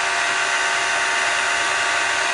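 Steady noise inside a moving car's cabin: an even hiss with a faint, steady high whine running through it, with no change.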